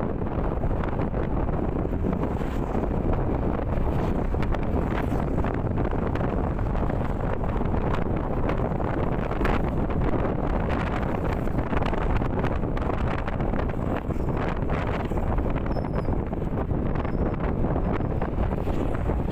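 Steady wind rush on the microphone of a rider on a moving Yamaha NMAX scooter, with the scooter's running and road noise blended underneath.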